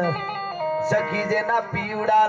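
Harmonium holding sustained chords, with a man's singing voice over it that pauses for about a second in the middle and comes back near the end.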